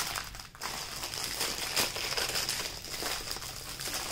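Plastic bag crinkling and rustling irregularly as a rolled canvas stuck inside it is pulled and worked at by hand.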